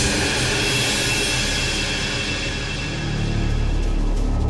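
Tense dramatic background score: a sudden bright, shimmering hit at the start that fades over about three seconds, with a low drone swelling near the end.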